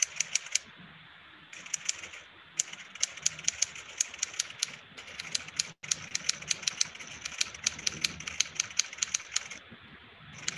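Typewriter keys clicking in quick runs of several strikes a second, with short pauses between the runs. The sound cuts out for an instant a little past the middle.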